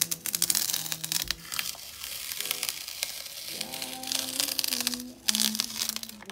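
Masking tape being peeled off watercolour paper, a crackling tear that comes in strips and is loudest near the start and again about five seconds in. Soft background music with held notes plays underneath.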